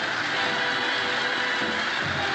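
Background title music: a dense, hissing wash fills the upper-middle range, and low beats come back near the end.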